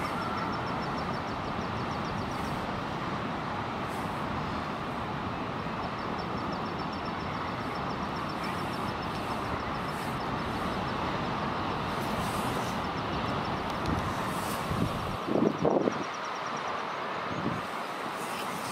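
Steady noise of wind and sea at a common guillemot breeding ledge, with a short burst of louder, rough guillemot calling about fifteen seconds in.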